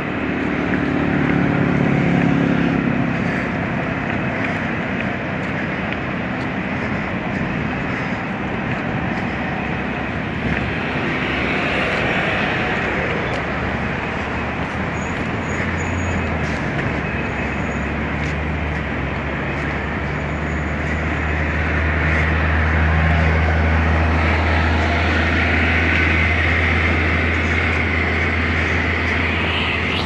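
Steady rumble of passenger trains standing in a station, with a deep hum that comes up strongly about halfway through and holds.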